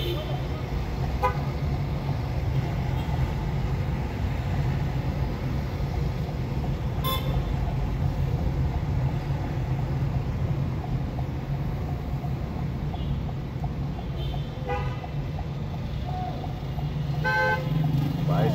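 Steady low drone of a car driving through city traffic, heard from inside the cabin, with short car horn toots from surrounding traffic: one about seven seconds in and two more near the end.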